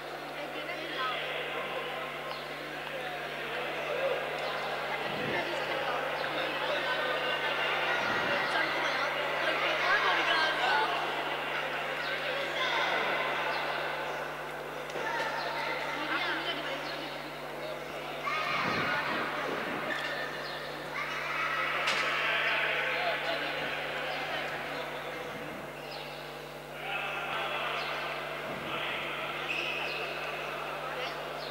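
Many voices of players and spectators talking and calling out, echoing in a large sports hall, with a few dull thumps.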